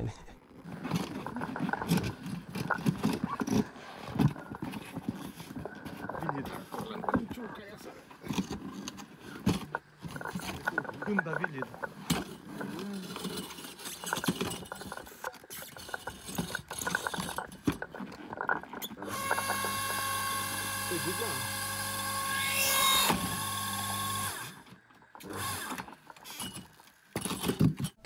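Small electric hydraulic log splitter: knocks and handling clatter as a log is set on the beam, then the electric motor runs with a steady hum for about five seconds, with a brief sharper sound partway through as the ram drives into the log, before it cuts off.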